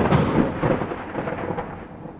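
A loud, rough rumble, like thunder, that fades steadily away.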